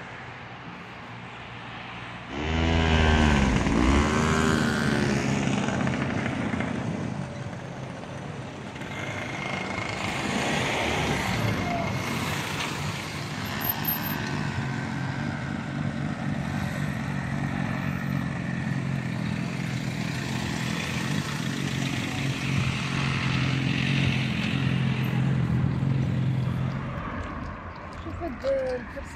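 Road traffic: a vehicle passes loudly about two seconds in, its engine pitch dropping as it goes by, followed by a long steady engine hum.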